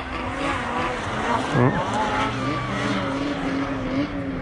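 Snowmobile engine running with a steady note, with a quick rev about a second and a half in.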